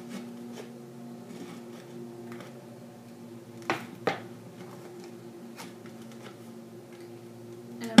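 An X-Acto craft knife working into the thin plastic of a 2-liter soda bottle, with two sharp plastic clicks close together a little before halfway. A steady low hum runs underneath.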